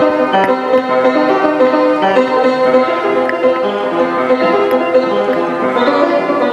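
Grand piano being played: a continuous flow of notes and chords.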